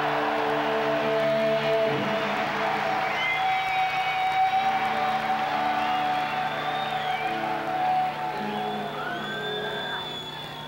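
A live rock band holding sustained chords that change every couple of seconds, over a cheering stadium crowd, with high sliding notes on top.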